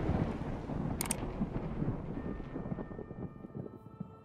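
A deep rumble dying away, the tail of a sound-effect boom, with two quick crackles about a second in. Faint steady high tones come in during the second half as the rumble fades.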